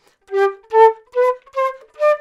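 Concert flute playing four short, separately tongued notes climbing step by step, about two notes a second. The embouchure moves on each note, the habit she says risks losing the centred sound and cracking notes.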